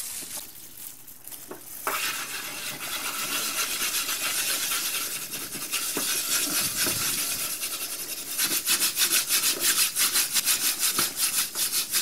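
A wet dishwasher tablet scrubbed over oven door glass by a plastic-gloved hand: a steady gritty rubbing that starts about two seconds in and becomes quick back-and-forth strokes, about three or four a second, in the last few seconds.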